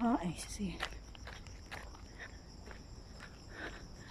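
Footsteps on a hiking trail: irregular scuffs and taps of a walker's shoes, opening with a brief vocal sound. A steady, high insect drone runs underneath.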